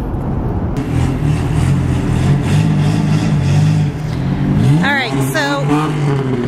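A motor vehicle's engine running close by, steady at first and then rising in pitch about five seconds in, with a brief voice over it.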